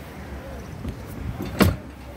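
A single sharp knock about one and a half seconds in, over a low steady outdoor background.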